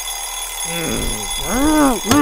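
Alarm clock ringing steadily as a sound effect in a cartoon. Over it, in the second half, comes a drowsy voice giving a couple of rising-and-falling groans.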